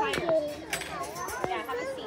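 Young children's voices, chattering and calling out as they play, with a few short sharp knocks.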